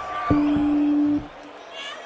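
A live rock band's closing note: a steady, flat low note starts sharply, holds for about a second and cuts off, while a higher held tone fades out.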